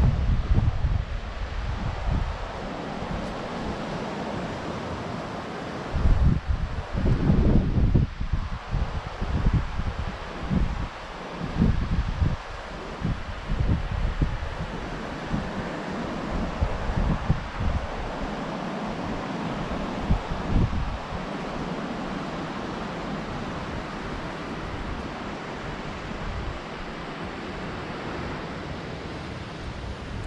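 Wind buffeting the microphone in irregular low gusts, strongest for several seconds early on and again briefly later, over a steady wash of surf from the sea.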